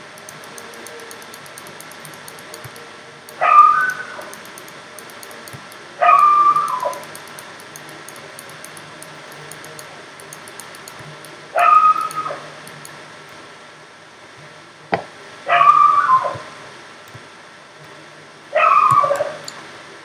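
A dog barking five times, a few seconds apart, each bark short and high-pitched with a falling pitch; a single sharp knock comes just before the fourth bark.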